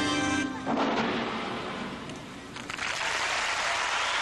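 Floor-exercise music ends with a held chord that cuts off about half a second in, followed by an arena crowd applauding, dipping briefly and then swelling again near the end.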